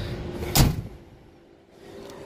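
A single loud thump about half a second in, then low outdoor background.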